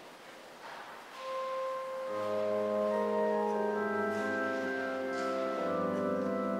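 Organ starting the introduction to an offertory hymn: a single held note about a second in, joined by full sustained chords with a bass line from about two seconds in.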